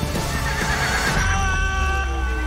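A horse whinnies, its pitch wavering, in the first second. It is set against film-score music, whose sustained chord comes in a little after a second over a steady low rumble.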